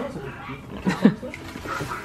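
A brief, short rising vocal sound from a person about a second in, with a couple of sharp clicks around it, over faint background voices.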